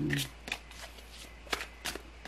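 Tarot cards being handled off-picture: a few short, sharp card clicks, the loudest about one and a half and two seconds in.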